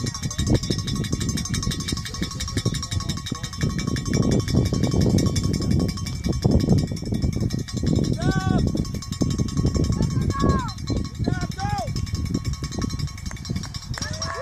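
Wind buffeting the microphone, a loud uneven rumbling noise throughout. Around two-thirds of the way through come a few short, pitched calls that rise and fall.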